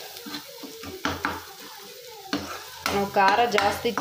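Steel spoon stirring and scraping onion masala in a nonstick kadai, with scattered clicks of the spoon against the pan over a light sizzle of the frying. A voice speaks in the last second.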